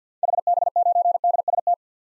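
Morse code sent at 50 words per minute as a single-pitch keyed tone, spelling out the call sign HB9DST in rapid short and long beeps that last about a second and a half.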